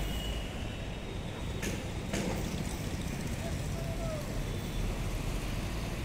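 Steady low rumble of distant road traffic in an open city setting, with a couple of brief knocks in the first half.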